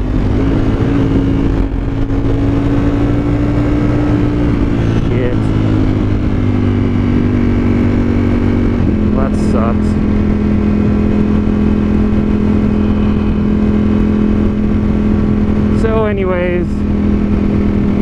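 Ducati Streetfighter V4 motorcycle's V4 engine pulling steadily at highway cruising speed, heard from the rider's position. Its note steps slightly lower about nine seconds in.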